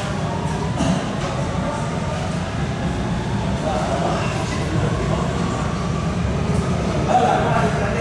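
Vienna U-Bahn line U4 metro train running along open track, a steady low rumble of wheels on rails as it passes and moves away.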